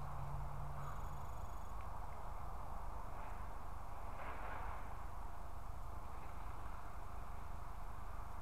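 Steady outdoor background noise, with a soft rustling scrape of a rake dragging dry leaves about four seconds in.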